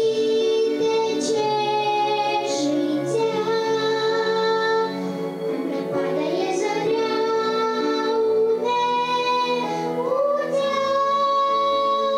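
A young girl and her female vocal teacher singing a slow song together, holding long notes that step up and down in pitch.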